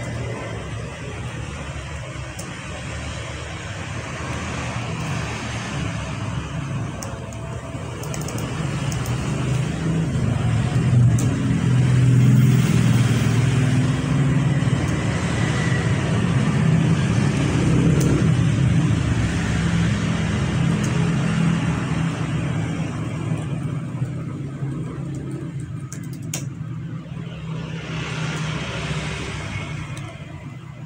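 A low, steady rumble with a hiss above it, swelling to its loudest in the middle and easing off toward the end.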